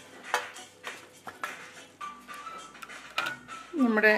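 Wooden spatula scraping and knocking caramel-coated peanuts out of a nonstick pan into a steel plate: several sharp clatters, mostly in the first two seconds. Soft background music comes in about halfway.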